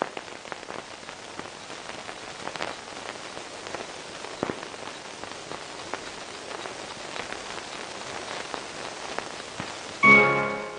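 Steady rain falling: an even hiss with scattered single drop sounds.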